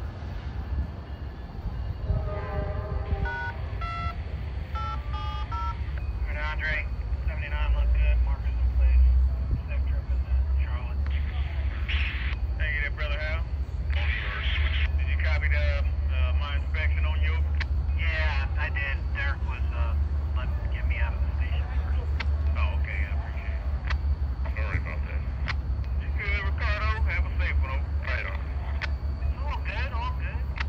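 Low steady rumble of an Amtrak passenger locomotive idling at the platform. A short run of stepped electronic beeps comes a few seconds in, with indistinct voices over the rumble.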